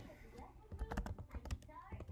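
A quick run of faint, sharp clicks and taps, like keys being pressed, about a second in, with a faint voice near the end.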